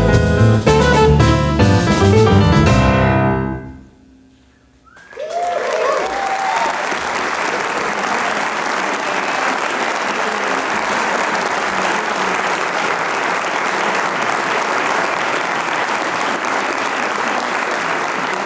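A jazz quartet of piano, double bass, drums and saxophone plays the last bars of a tune and stops about three and a half seconds in. After a moment's quiet, an audience applauds steadily.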